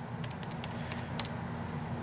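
Calculator keys being pressed: a quick run of light clicks, used to convert 0.72 miles into feet.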